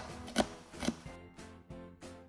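Two knocks of a cleaver chopping chilli on a wooden chopping board, about half a second apart, followed by background music with a steady beat.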